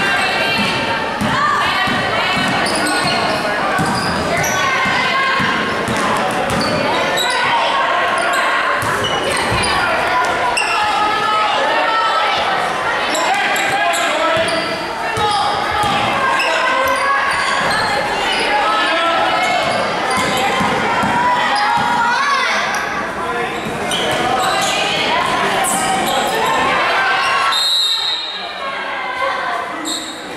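A basketball being dribbled on a hardwood gym floor, with voices from the players and spectators echoing around the hall. A referee's whistle sounds briefly near the end.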